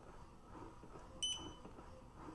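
One short electronic beep about a second in from the Upreign under-desk elliptical's control panel as its speed button is pressed, stepping the speed up one level. Underneath, the motorized pedals run quietly.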